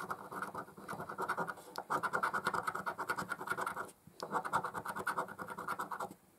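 A coin scraping the coating off a paper scratch card in quick, rapid strokes, with a short pause about four seconds in.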